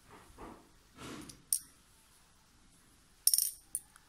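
Small pearl beads clicking against each other as they are picked up for stitching: one sharp click about a second and a half in, then a quick cluster of clicks near the end, with soft rustles of handling before them.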